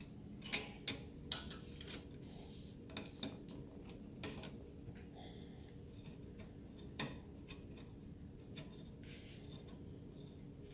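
Small irregular metallic clicks and ticks of a hex key turning bolts into the metal plates of a desktop CNC router. The clicks come in a quick cluster in the first two seconds, then singly every second or few, over a faint steady hum.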